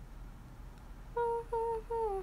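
A young woman humming a short tune: three short notes starting a little over a second in, the last one sliding down in pitch.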